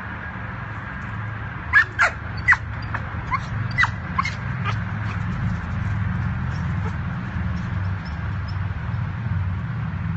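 A dog giving a quick run of short, high yips during play, about eight in three seconds, over a steady low rumble.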